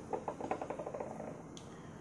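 A run of light ticks that come faster and fainter and die out about a second in.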